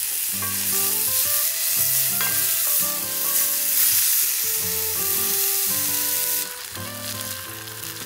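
Sliced mushrooms sizzling in a small cast-iron skillet over a campfire grill while a wooden spoon stirs them. The sizzle drops off sharply about six and a half seconds in.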